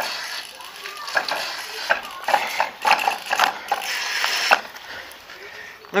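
Homemade dancing water speaker spurting water in irregular pulses driven by a song's bass, with clicks from its solenoid and the song playing faintly.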